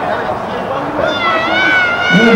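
A single drawn-out, high-pitched cry starts about halfway through, rises a little, holds, then starts to fall.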